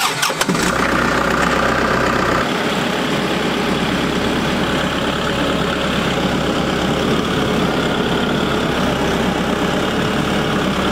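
Kubota MX6000 tractor's diesel engine cranked with the key and catching almost at once, then running steadily. About two and a half seconds in, its sound settles to an even, lower-throttle run.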